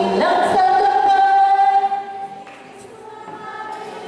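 A group of women singing together, holding long steady notes; the singing breaks off about two seconds in and the sound drops to a faint quiet stretch.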